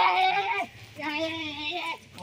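A person's voice making two long, wordless held cries at a steady high pitch, the first ending about half a second in, the second running from about one second in to near the end.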